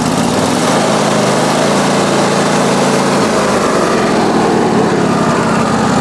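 Wood-Mizer LX150 portable band sawmill running steadily with its engine at a constant pitch.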